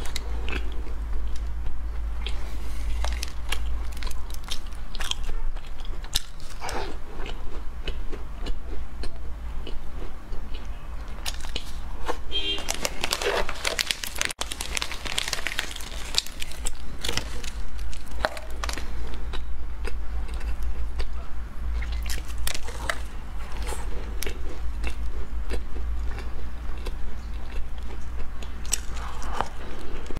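Close-miked biting and chewing of soft baked cakes, with many small mouth clicks. A denser crinkling patch about 12 to 15 seconds in, from a plastic snack wrapper being torn open. A steady low hum runs underneath.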